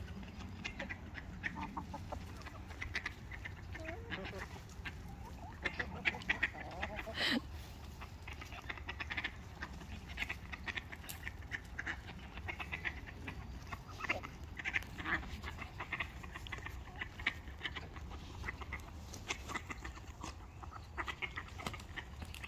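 Backyard hens clucking and calling softly now and then while they forage, short scattered calls over a steady low background rumble.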